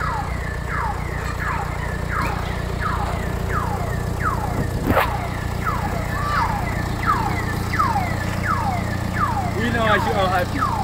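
A car engine idling with a steady low hum, under a high chirp that falls in pitch and repeats about twice a second. There is one short click about halfway through.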